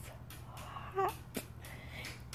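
A woman's voice in a pause: a faint breathy sound, then one short spoken word about a second in, followed by a brief click. A steady low hum runs underneath.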